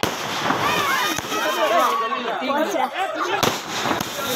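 Aerial fireworks going off, with a sharp bang about three and a half seconds in, under excited voices shouting and calling.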